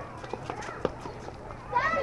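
Children's voices calling out across a youth baseball field, with a few sharp knocks in the first second, the loudest just before the middle. The voices grow louder near the end.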